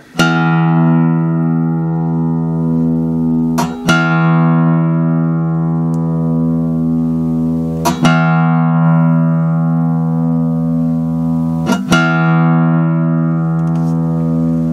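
Open low E (sixth) string of an acoustic guitar plucked four times, about four seconds apart, each note left to ring out as a steady reference pitch for tuning by ear.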